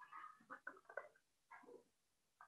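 Near silence: room tone with a few faint, short sounds scattered through it.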